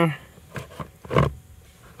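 Plastic blower motor being pushed up into the dash's HVAC housing by hand, bumping and scraping as it is fitted: a few soft knocks, the loudest about a second in.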